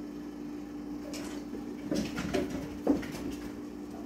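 Cats moving about on top of wooden kitchen cabinets: a few thumps and knocks of paws on the wood, a cluster about two seconds in and a sharper knock near three seconds.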